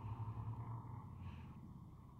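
Quiet pause: a faint steady low hum with soft hiss, slowly fading.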